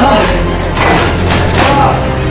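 Footfalls thudding on the deck of a curved manual treadmill during a sprint, over background music with a steady bass.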